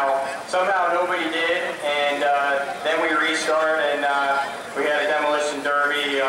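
A man speaking into a handheld microphone: continuous talk with short pauses and no other sound standing out.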